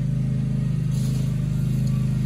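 An engine or motor running steadily with a low, even hum.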